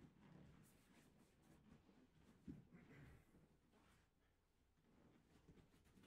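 Near silence: faint rustling of jiu-jitsu gis and bodies moving on a padded mat, with one soft thump about two and a half seconds in.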